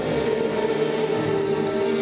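Choral music with voices singing long held notes at a steady level.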